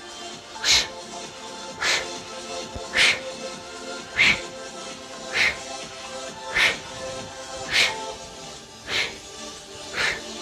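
Sharp exhales into a headset microphone, eight of them at an even pace of a little under one a second, each as the arms swing overhead during low-impact jumping jacks. Background music plays under them.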